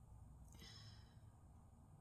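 Near silence: room tone, with one faint breath out about half a second in.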